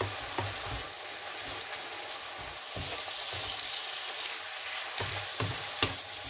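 Oyster mushrooms sizzling in a nonstick frying pan with a steady hiss while a wooden spatula stirs them. Now and then the spatula scrapes and knocks on the pan, and a sharp knock just before the end is the loudest sound.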